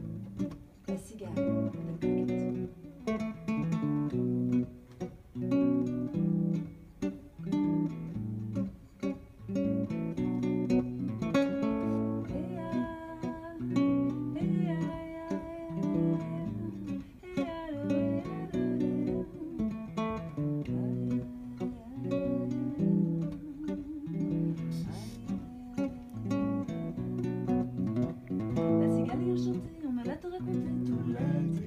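Acoustic guitar played as a song's accompaniment, strummed and picked, with a voice singing over it through the middle stretch.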